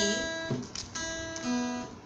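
Acoustic guitar: single notes plucked and left to ring, starting with the open first (high E) string as it is named, then a new, lower note about one and a half seconds in.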